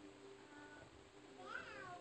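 A single short, high meow that rises and then falls in pitch, about one and a half seconds in.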